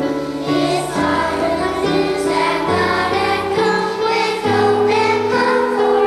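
Children's choir singing a song together over an accompaniment whose low notes step to a new pitch about once a second.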